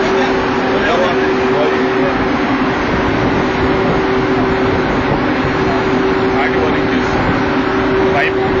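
Loud, steady running noise of shipboard machinery in an engine-room space: a constant two-note hum under a dense rushing wash, unchanging throughout.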